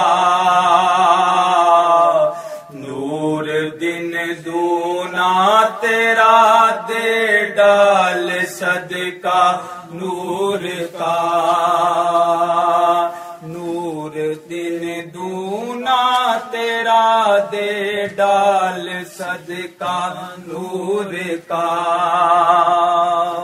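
A man singing a devotional song solo, drawing out long held notes with wavering, ornamented pitch and short breaks between phrases.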